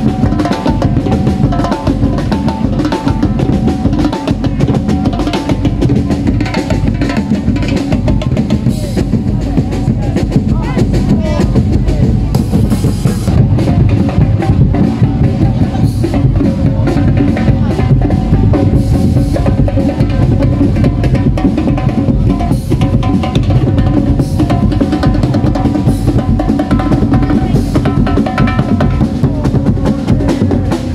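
Drum-heavy Sinulog dance music: continuous bass and snare drumming with a melody above it, keeping a steady beat throughout.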